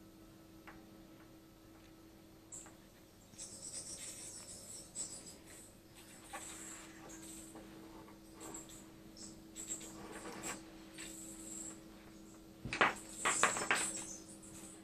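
Faint handling noises: a towel rustling and a clear plastic face mask and its tubing scraping and knocking, with a louder cluster of scrapes and knocks near the end. A steady low electrical hum runs underneath.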